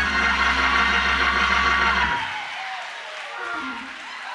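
A sustained chord on the church keyboard with a deep bass note underneath, played behind the preacher's pause. The bass cuts off about two seconds in and the music drops to a much quieter level.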